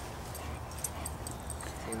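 Faint low background rumble with a few soft clicks.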